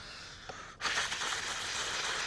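A wine taster draws air through a mouthful of red wine to aerate it, giving it oxygen in the mouth: a long hissing slurp that starts just under a second in.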